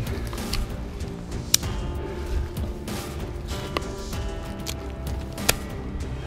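Background music of held, steady tones, with a few sharp clicks over it, the loudest about one and a half seconds in and another near the end.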